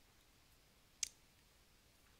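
Near silence with a single short, sharp click about a second in.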